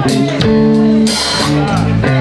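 Live blues band playing: electric guitar and bass holding notes that change every half second or so over drums, with a cymbal wash about half a second in.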